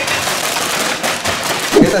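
Snack-chip bags crushed by hand: the plastic foil bags crinkle and the crisp chips inside crackle as they break into crumbs.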